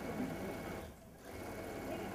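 Electric sewing machine running faintly, dipping briefly about a second in.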